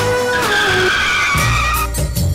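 A tyre-screech sound effect laid over pop music: a high, slowly falling squeal that cuts off near the end. A heavy bass beat comes in after it starts.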